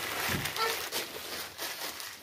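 Faint rustling and handling noise of cloth and crumpled newspaper, with a brief faint voice about half a second in.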